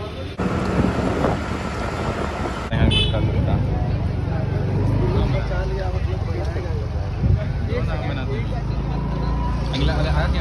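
Wind buffeting and road noise on a moving scooter in traffic, with indistinct voices.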